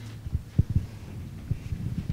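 Low, irregular thumps and bumps of a handheld microphone being handled and carried, over a steady low electrical hum.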